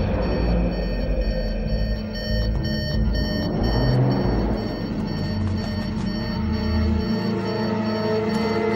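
Instrumental Tamil film background score, a character-entry theme, with sustained tones over a heavy low bass pulse. The bass drops out about seven seconds in.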